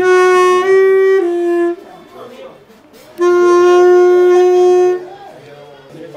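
Saxophone playing held notes. A short phrase of three notes, the middle one a little higher, ends about two seconds in. After a pause of about a second and a half comes one long note held for nearly two seconds.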